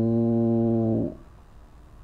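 A man's voice holding a wordless hesitation sound at one steady low pitch for about a second, then faint room tone.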